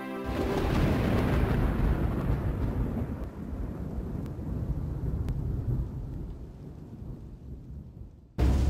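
A deep rolling rumble like thunder, a sound effect that breaks in suddenly as the music stops and slowly dies away over several seconds, with a couple of faint clicks midway.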